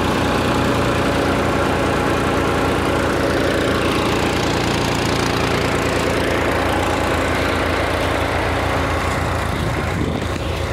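Tractor-driven Jai Gurudev paddy thresher running steadily: the tractor's diesel engine turns over at an even, pulsing rate while the thresher drum spins.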